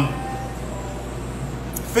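Steady low background hum with faint hiss, room tone under a pause in speech.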